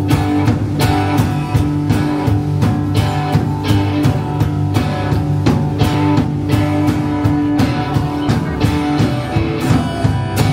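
Live rock band playing, with strummed acoustic guitar, electric guitars and a drum kit keeping a steady beat of about two hits a second. No singing is picked out, so this is likely an instrumental stretch of the song.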